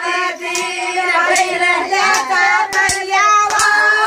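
A group of women singing a Banjara folk song together, with sharp hand claps breaking in every second or so.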